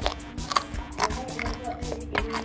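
Close-miked crunching and chewing of crisp Filipino piso snacks, with sharp crunches about twice a second.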